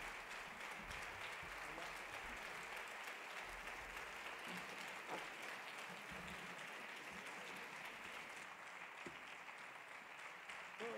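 Theatre audience applauding, heard faintly, an even patter of many hands clapping that thins slightly near the end.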